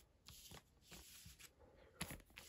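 Faint rustling and sliding of Lego Friends plastic polybags under a hand, in two or three short patches of crinkle.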